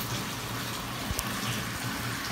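Bathtub tap running, water pouring steadily into the tub, with one brief knock a little past halfway.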